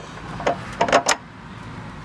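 A few short, light metal clicks and clinks, bunched about half a second to a second in, as a billet-aluminium motor-mount bracket is handled and set down over the engine mount's stud.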